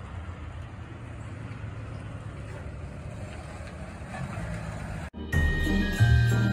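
A USPS mail truck driving along the street, its engine and tyre rumble growing slowly as it comes closer over a steady outdoor hiss. About five seconds in, the sound cuts off suddenly and bright Christmas music with jingle bells begins.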